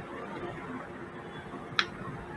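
Faint steady background hiss in a pause in speech, with a single short, sharp click near the end.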